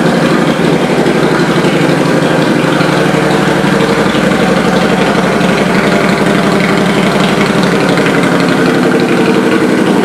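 2007 Harley-Davidson Night Rod Special's liquid-cooled Revolution V-twin idling steadily.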